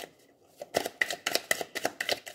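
A deck of cards being shuffled by hand: after a brief pause, a quick run of crisp card slaps, about six a second.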